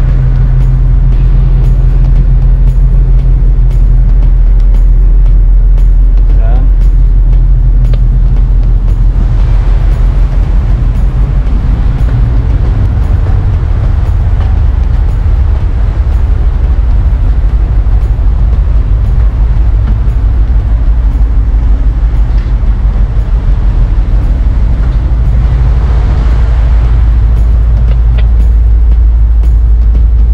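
Steady loud low drone of a cargo ship's engines, heard on open deck with wind rumbling on the microphone.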